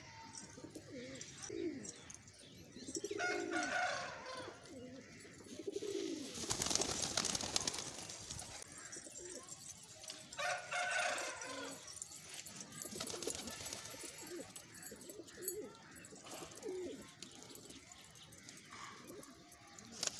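Domestic pigeons cooing repeatedly in low, bending calls, with a loud rush of noise lasting over a second about six and a half seconds in.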